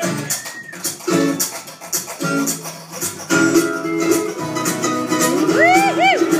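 Acoustic guitar and plucked strings playing a strummed, rhythmic instrumental passage of an old-time song, with a voice coming in near the end.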